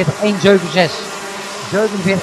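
Several two-stroke Rotax Mini Max kart engines buzzing at high revs as the karts race round the circuit.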